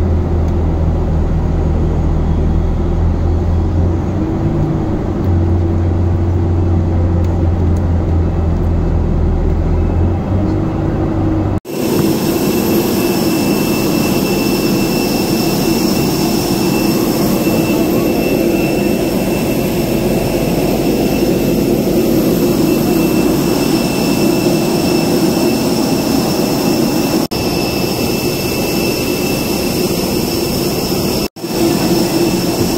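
Loud, steady jet aircraft noise. For about the first third a deep hum drops out briefly and returns. After an abrupt cut comes a steady high-pitched jet whine over a dense roar.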